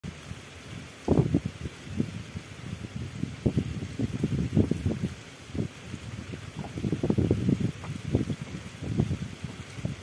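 Wind buffeting the microphone in irregular gusts on a moving wooden river boat, over a low rumble and hiss of air and water.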